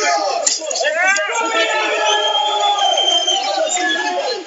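Raised, unintelligible voices shouting in a boxing arena, with one sharp smack about half a second in, as a punch is thrown.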